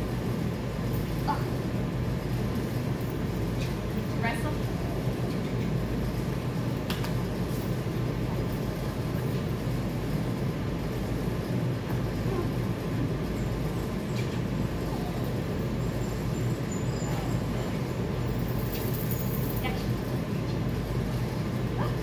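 Steady low mechanical rumble with a constant hum. A few faint short squeaks and clicks come through it now and then.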